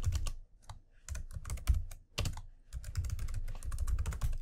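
Typing on a computer keyboard: a run of irregular key clicks with a couple of brief pauses.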